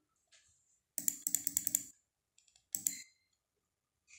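Clicking at a computer, from a mouse or keys: a quick run of clicks about a second in, then a shorter burst near three seconds.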